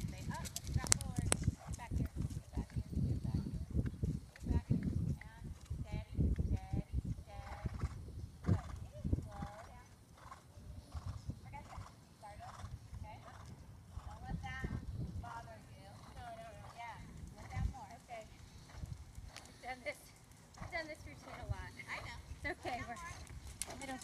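Hoofbeats of a horse cantering on an arena's sand footing, dull thuds that are loudest in the first several seconds and fainter through the middle as the horse moves off.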